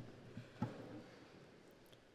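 Quiet hall with a few faint soft knocks in the first second, then near silence.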